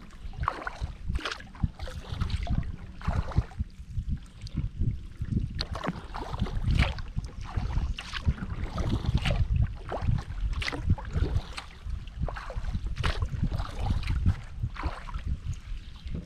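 Kayak paddle blades dipping and pulling through flat water, repeated splashes and drips at a steady paddling rhythm, with wind rumbling on the microphone.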